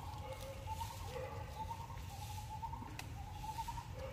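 Outdoor ambience with a low steady rumble and a bird's short pitched calls repeating throughout. A single sharp click comes about three seconds in.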